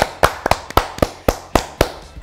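Hand claps in an even rhythm, about four a second, stopping shortly before the end.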